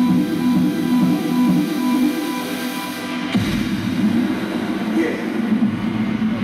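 Electronic dance music from a DJ's opening intro, played loud over a club sound system. About three seconds in, the high end drops away and a falling sweep brings in deep bass.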